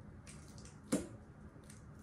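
Barbecue sauce squirting from a squeezed plastic bottle: a few short wet squirts and splutters, the loudest about a second in.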